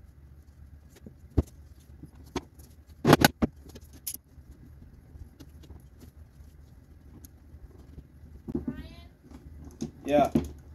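Cedar boards and rails handled on a wooden workbench: a few sharp knocks, then a louder clatter about three seconds in. Near the end, a brief high-pitched rising call.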